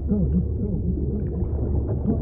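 Muffled underwater-like sound from the film's soundtrack: a deep, steady rumble with warbling, moaning tones that bend up and down, as if heard from under water.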